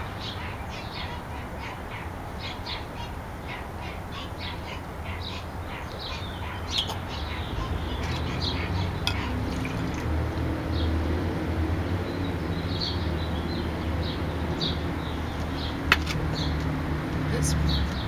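Wild birds singing outdoors: many short chirps and calls, over a steady low background rumble. A single sharp click sounds near the end.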